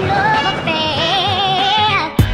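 A voice singing: short rising notes, then one long held note with a heavy vibrato that stops just at the end.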